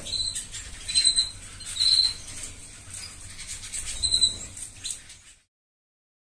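Aviary canaries and small finches giving short, high call notes, about four of them spread over the first four seconds; all sound cuts off suddenly about five and a half seconds in.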